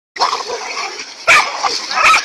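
Dogs barking while they bait a large snake, with one sharp, loud bark about a second and a half in.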